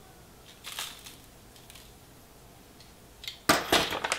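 A plastic food pouch being handled: mostly quiet with a few faint rustles, then a brief burst of sharp crackles and clicks near the end.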